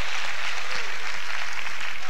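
Congregation applauding: a steady wash of clapping after a line of the sermon.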